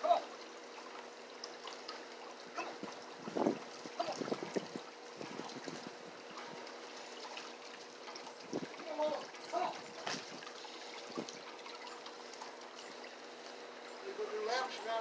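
Faint steady trickle of water over a low steady hum, broken by a few short faint vocal sounds and knocks about four and ten seconds in.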